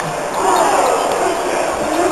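A basketball being dribbled on the court, with the chatter of voices in the crowd around it.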